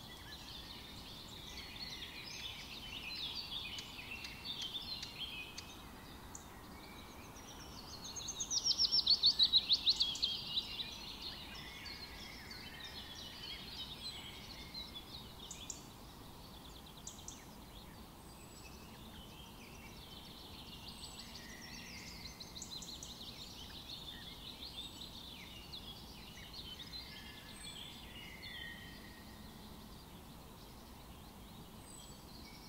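Woodland birdsong: several small birds singing and chirping over a faint steady hiss, with one loud rapid trill about eight to eleven seconds in.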